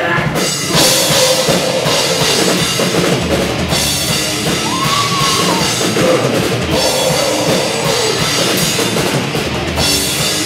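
A live pop-punk band playing loud and full-on, with a pounding drum kit and distorted electric guitars, heard from the crowd in a small bar room.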